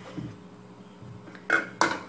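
Metal spoon knocking against a cooking pot: a faint scrape, then two sharp clinks close together about a second and a half in.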